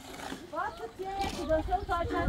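A person's voice calling out in pitched tones that glide up and down, then several short calls in quick succession.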